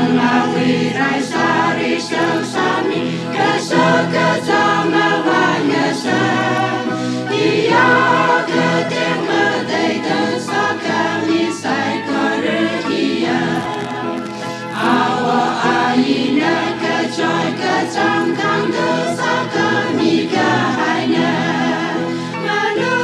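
A choir singing a gospel song, with sustained low accompaniment under the voices.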